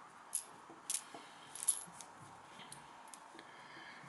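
UK one-penny coins clinking lightly against each other as they are turned over by hand on a towel: a few short, faint clinks, mostly in the first two seconds.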